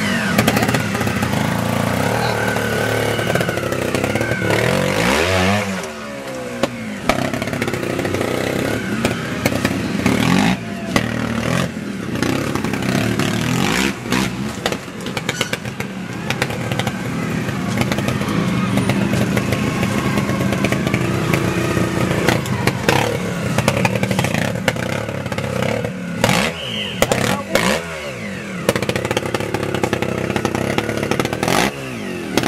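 Trials motorcycle engine revving and blipping at low speed, the revs rising and falling again and again, with sharp clatter and knocks from the bike working over rocks and roots.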